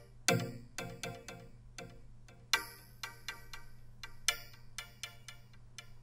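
Soloed synth pluck melody with a stereo delay, its plucked notes coming a few per second, while a low-cut EQ filter is swept upward. The bass fades out of the notes and leaves them thinner and brighter.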